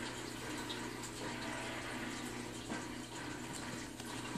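Steady faint water trickle, with a low steady hum underneath.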